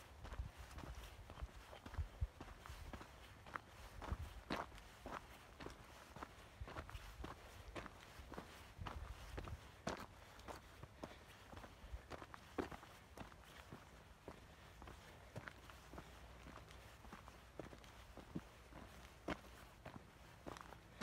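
Footsteps on a loose rocky dirt trail: an uneven run of faint scuffs and clicks of stones underfoot, one to three a second, over a low rumble.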